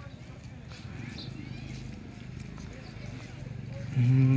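Indistinct voices of people talking in the background, none of the words clear.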